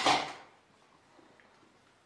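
A voice trailing off with a light clatter in the first half second, then near silence: room tone.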